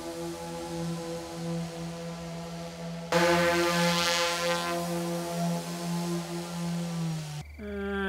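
Heavy-lift multirotor drone hovering: a steady, droning hum of its propellers, a low tone with many overtones, which gets louder about three seconds in and cuts off near the end.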